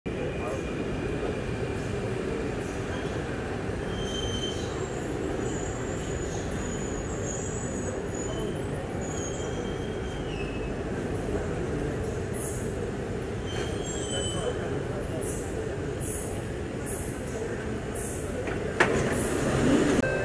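Singapore MRT train at the platform: a steady rumble with several brief, thin, high wheel squeals, and a sudden louder sound near the end as the doors open.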